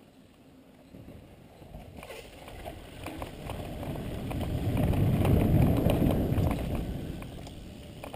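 Mountain bike rolling fast downhill over a dirt trail and a bridge, with tyre rumble, small rattles and wind buffeting the bike-mounted camera's microphone; the rumble builds to a peak about halfway through and eases off near the end.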